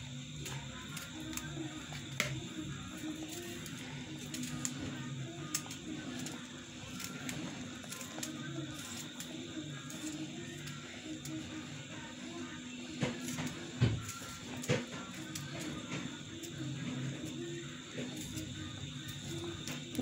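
Faint background music, with a few small clicks and knocks from hand knife work scattered through it, the loudest around two seconds in and between about 13 and 15 seconds.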